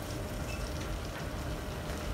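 Steady sizzle of food frying in pans on a lit gas hob, over a low rumble.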